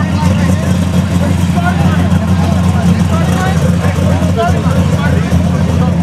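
A car engine idling with a steady low rumble, under the chatter and shouts of a crowd.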